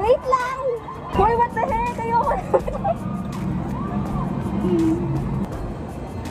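Short excited voices and exclamations over background music, followed by a steady low hum in the second half.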